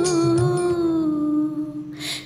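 A woman singing one long held note that sinks slightly in pitch and tails off near the end. The rhythmic backing music drops away shortly after the note begins.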